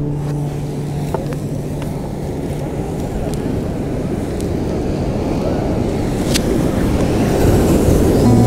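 Wind noise on the microphone mixed with surf, a steady low rush. An acoustic guitar's last chord rings on and fades away over the first two seconds, and there is a sharp click about six seconds in.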